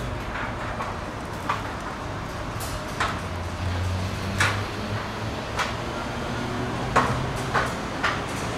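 Construction-site and street-traffic ambience: a steady low rumble with sharp short clicks or taps about every one to one and a half seconds, and a brief low hum about halfway through.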